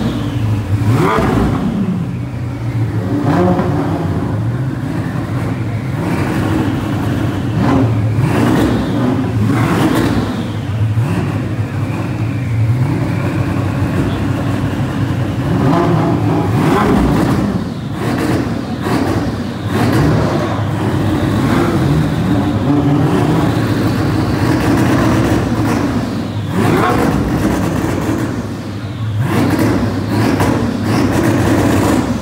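Supercar engines revved again and again, the pitch climbing and dropping with each blip, with a few short lulls between runs.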